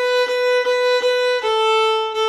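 Fiddle bowed in even, straight eighth notes, one note repeated with a short break at each bow change about every 0.4 s. About one and a half seconds in it steps down to a slightly lower note that is held.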